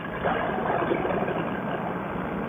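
Paramotor's Vittorazi Moster 185 single-cylinder two-stroke engine and propeller running steadily in flight, heard through the pilot's helmet intercom microphone.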